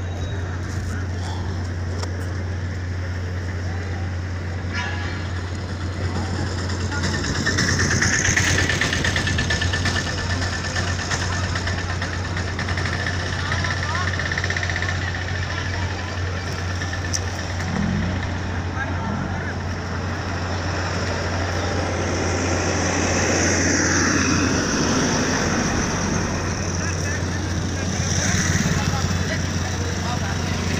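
A vehicle engine idling steadily, a low hum throughout, with people's voices talking in the background, louder about a third of the way in and again toward the end.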